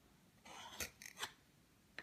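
Faint scraping and a few light clicks of a wooden toy knife working at the join of a wooden pretend-food bread slice. There is a soft scrape about half a second in, followed by short taps.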